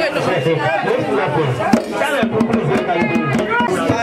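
A man singing through a handheld microphone over a crowd of voices singing and chattering, with music.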